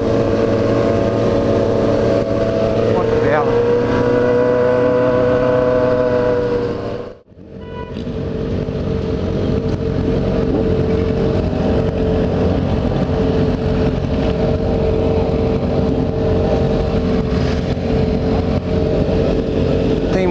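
Yamaha XJ6 inline-four motorcycle engine running steadily under way, with wind noise on the microphone; its pitch rises slightly and eases off a few seconds in. About seven seconds in the sound cuts out abruptly for a moment and comes back as a steady engine note.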